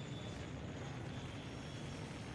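A steady low background hum with a faint high whine above it, even throughout.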